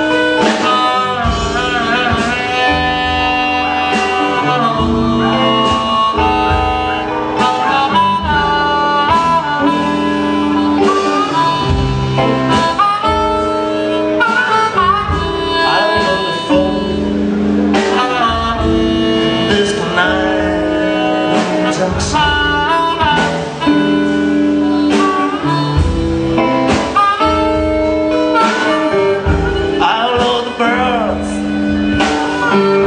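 Blues band playing live: a harmonica carries the lead with bending, sustained notes over guitar, bass and a steady drum beat.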